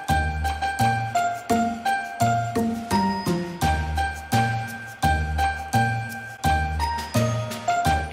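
Upbeat background music: a melody of bright, bell-like chiming notes over a steady bass beat.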